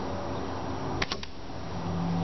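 Two sharp clicks in quick succession about a second in, over a steady low rumble.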